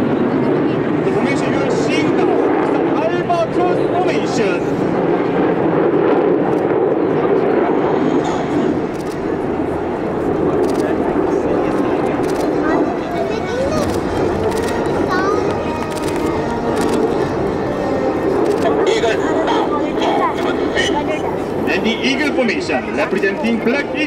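A steady, continuous jet roar from a formation of eight KAI T-50B Golden Eagle jets flying overhead, with spectators chattering close by.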